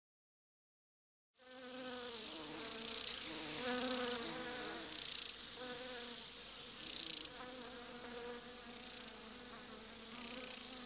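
A steady insect-like buzzing with a wavering drone underneath and a high hiss, starting suddenly about a second and a half in.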